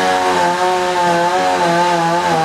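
A small engine running steadily, its pitch wavering a little up and down.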